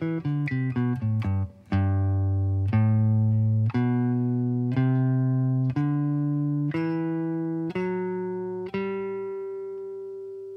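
Clean electric guitar, a Fender Telecaster, played note by note. A quick run of notes comes first, then a G major scale is played slowly upward, about one note a second, and the top note is left to ring and fade.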